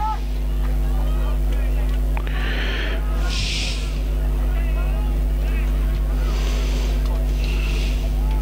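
Scattered voices of spectators and players calling out around a suburban football ground, over a steady low rumble and hum. Several brief louder, hissy shouts rise above the voices about two, three and six to seven seconds in.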